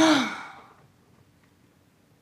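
A young woman's loud, voiced sigh at the very start, its pitch rising and then falling as it fades over about half a second.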